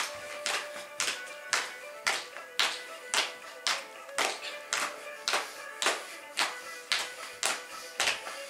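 Irish step dancer's feet striking a wooden floor in a steady beat, about two sharp taps a second, over music with sustained tones.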